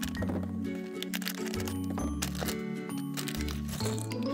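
Soft background music with a steady bass line, over the crinkling and tearing of a foil blind bag being opened and a few small clicks as plastic figure parts spill onto the table.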